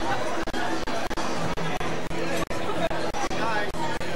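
Many guests' voices chattering at once in a large reception hall, an overlapping conversational babble with no single clear speaker. The sound drops out for an instant several times.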